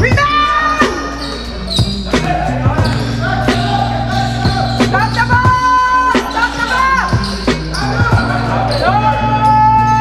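Basketball bouncing and thudding on a hardwood gym floor, with music playing over it: a steady bass line that steps between notes and long held, sung-sounding notes.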